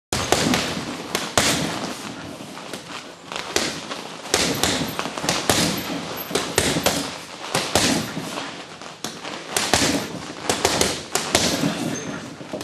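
Boxing gloves striking a heavy punching bag: irregular punches, often landing in quick combinations of two to four, with short pauses between them.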